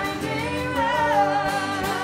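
Live rock band playing, with a voice singing long notes that slide in pitch over the music.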